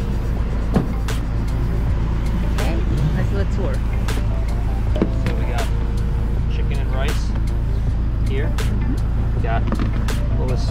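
Background music: a singing voice over a steady, heavy bass line.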